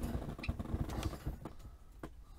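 Movement noise of a person shifting about close to the microphone: irregular low thumps and scattered light clicks.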